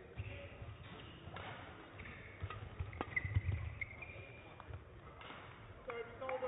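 Badminton rally: rackets striking the shuttlecock in several sharp clicks roughly a second apart, with players' footsteps thudding on the court.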